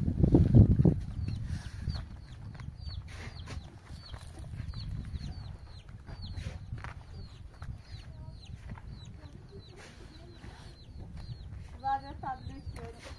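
Chicks peeping: short, high, falling notes repeated two or three times a second, with scattered sharp knocks. A loud, low clatter in the first second comes as a concrete block is handled.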